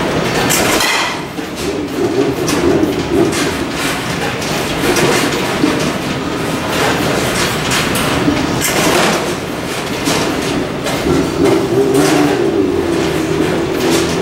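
Batting-cage machinery rumbling and clattering steadily, with sharp knocks every second or two from balls being hit and striking the netting.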